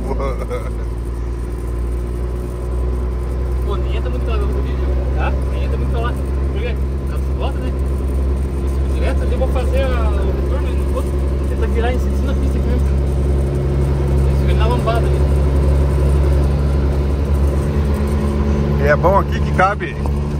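Diesel engine of a cab-over truck running under way, heard from inside the cab as a steady hum that grows somewhat louder past the middle. Voices and laughter come over it now and then.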